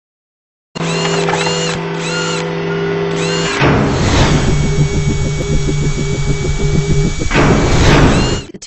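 Intro sound effects for an animated logo: after a moment of silence, a steady mechanical, drill-like whirring drone with short repeated chirps, a whoosh about three and a half seconds in, then a pulsing machine-like rhythm under a thin held tone, and a second whoosh near the end.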